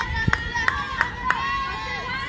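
A high-pitched voice held in one long call at a girls' baseball game, with four sharp claps about three a second in the first half.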